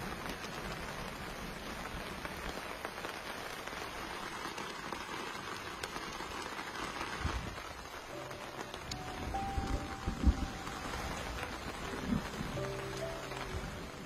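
Steady rain pattering on a plastic tarp overhead, with a few dull low thumps in the second half.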